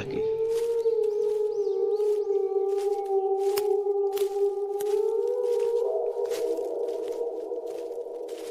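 A sustained, slightly wavering pitched drone from the drama's sound design. About six seconds in it shifts to a denser, lower tone, and it fades toward the end. Scattered sharp clicks or crackles sound throughout.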